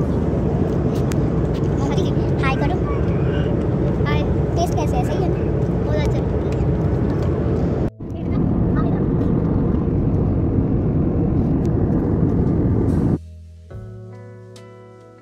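Steady cabin noise of a jet airliner in flight, a low, even roar, with indistinct passenger voices over it in the first few seconds. The sound drops out for a moment about eight seconds in, and near the end the cabin noise stops, giving way to acoustic guitar music.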